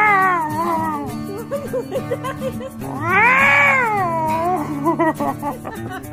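Siamese cat meowing in long, drawn-out yowls that rise and fall in pitch: one ending about a second in, another about three seconds in. Background music with steady low notes plays underneath.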